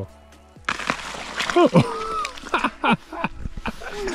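Thin ice on a frozen meltwater pool cracking and crunching under a hiking boot as a foot is put on it to test it. There are many sharp cracks and a few short squeaks sliding in pitch in the first two seconds, then scattered smaller cracks.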